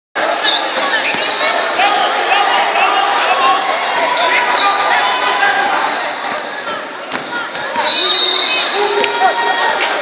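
Basketball game sounds echoing in a large gym: a ball bouncing, sneakers squeaking on the hardwood court, and spectators' and players' voices. A short steady whistle sounds about eight seconds in, the loudest moment.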